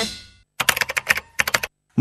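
Music fading out, then a quick run of computer-keyboard typing clicks, about a dozen keystrokes over roughly a second. It is a typing sound effect for an on-screen info card.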